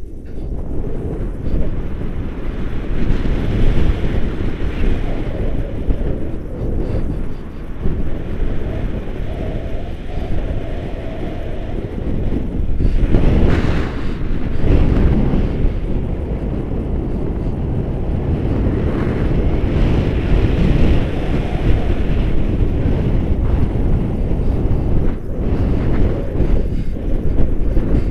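Wind rushing over a camera microphone on a paraglider in flight: a steady low rumble of airflow that swells in gusts, loudest about thirteen seconds in.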